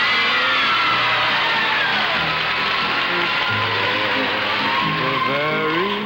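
Studio band music from a 1950s television variety show, with sliding, swooping notes falling early on and rising glides near the end.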